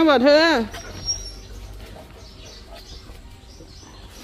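A woman's voice speaking briefly in a high, sing-song tone, then quiet outdoor background with one short, high, thin chirp about a second in.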